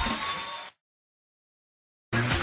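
Stand-up comedy audience laughing and applauding, fading and then cut off abruptly less than a second in, followed by complete silence.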